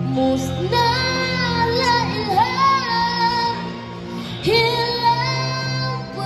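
A boy singing live into a microphone, two long held phrases without clear words, over electric guitar and backing music.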